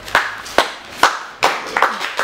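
Single hand claps, about two a second and louder than the preceding voice: applause beginning at the end of a spoken-word performance.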